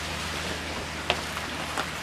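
Steady bubbling of aquarium airstones aerating worm-castings tea in a plastic bucket, over the low steady hum of the aquarium air pump. A faint click about a second in.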